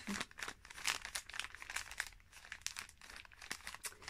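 Wrapping paper around a small gift package crinkling in irregular rustles and crackles as the package is handled and felt.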